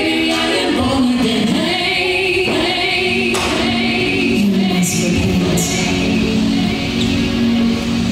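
A song sung by a group of voices, with long held notes in the second half.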